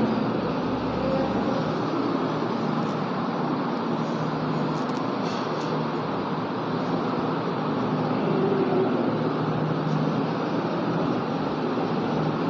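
Steady background noise, an even low hum with hiss that holds at one level, with a few faint light clicks.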